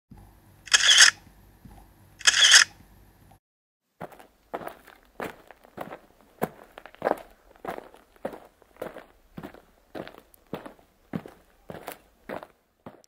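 Two short hissing bursts about a second and a half apart. After a brief silence comes a steady run of footsteps, about one and a half steps a second.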